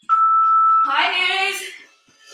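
A steady electronic beep held for just under a second, followed by about a second of voice in the background music.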